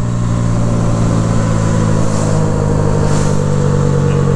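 Modified Honda Grom's small single-cylinder engine running steady at speed, with heavy wind rush over the microphone. The bike is slowing off the throttle from about 70 mph.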